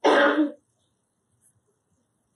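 A man clears his throat once, briefly, in a single short rasp at the start, then quiet.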